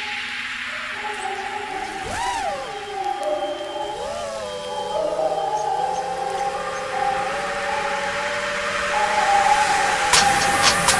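The racing quadcopter's four brushless motors (Hobbywing XRotor 2205 2300kv) with 5-inch props, whining steadily at idle while armed on the ground, then punched up to full throttle twice, about two and four seconds in, the pitch shooting up and dropping back each time. They then settle into a steady whine in forward flight, growing louder near the end.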